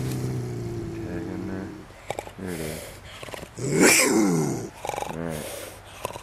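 Bobcat held in a wire cage trap growling low and steady for the first couple of seconds, then giving a few short snarling calls, the loudest about four seconds in with a hiss.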